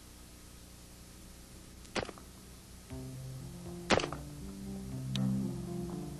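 Three sharp clicks, about two, four and five seconds in, the middle one loudest. From about three seconds in, low sustained music notes play under them.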